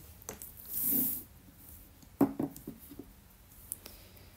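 A tarot deck and a small perfume bottle being set down on a wooden tabletop: a soft sliding rub about a second in, then a few light knocks a little after two seconds.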